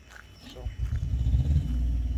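A semi truck's auxiliary power unit (APU), a small diesel engine, starting up: a low rumble builds from about half a second in and settles into a steady, even running note.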